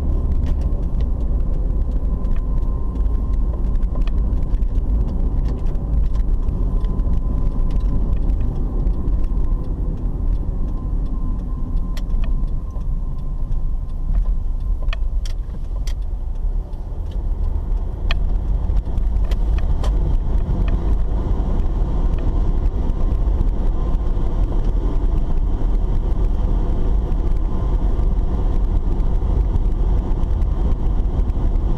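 Road and engine noise of a car being driven, heard from inside the cabin: a steady low rumble, with a few light clicks or rattles around the middle.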